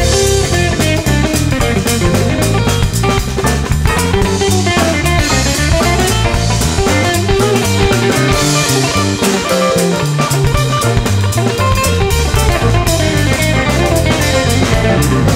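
Rock band recording: guitar playing over a drum kit's steady beat and a bass line.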